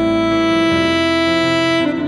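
Alto saxophone holding one long, steady note, moving down to a lower note near the end.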